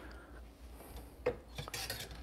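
Faint handling of an espresso cup on the espresso machine's drip tray: a light click about halfway through and a couple more clicks with a short rub near the end.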